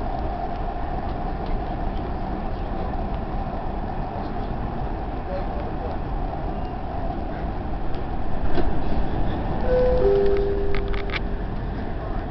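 Dubai Metro train running, heard from inside the carriage as a steady rumble that grows louder about eight seconds in. Two short steady tones and a few clicks follow near the end.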